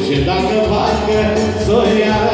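A live band playing Romanian etno dance music, with a fast, steady beat under a melody line.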